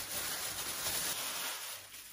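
Thin plastic bag crinkling and rustling as gloved hands handle it, dying away about a second and a half in.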